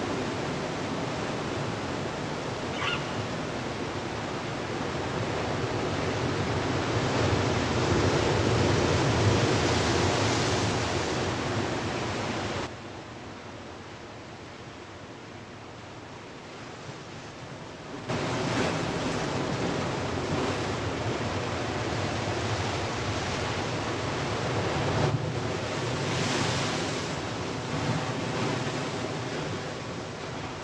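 Surf breaking on a sandy beach, a continuous rush of waves with some wind, swelling and easing in level. A little before halfway it drops to a quieter wash for about five seconds, then the full surf returns.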